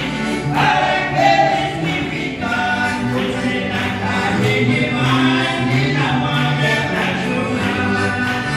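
Gospel song sung by voices with piano accordion accompaniment, the accordion keeping a steady rhythm under the singing.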